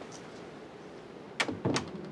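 A glass-panelled wooden door being shut: a sharp click about one and a half seconds in, then a short rattling knock as it closes.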